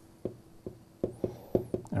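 A stylus tapping and scratching on a pen tablet as letters are handwritten: a series of light, irregular taps.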